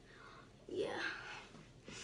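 Only speech: a woman saying a quiet "yeah" a little under a second in, with faint room tone around it.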